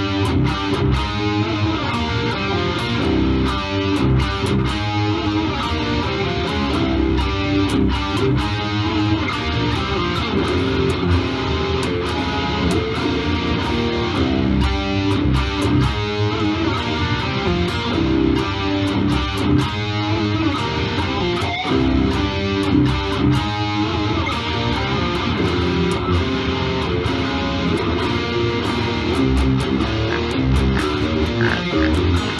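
Electric guitar being played: a continuous riff of picked notes with no breaks.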